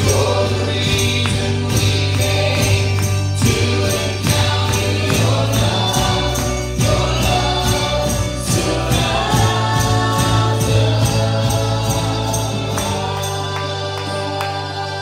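Live worship band: several voices singing together over acoustic and electric guitars and a steady bass, with a light, regular percussive beat. Near the end the bass drops out and the music thins.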